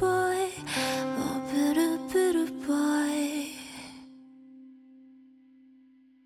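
Indie band playing live with a female lead vocal in the final bars of a song. About four seconds in, the band stops and a single held low note rings on, fading away.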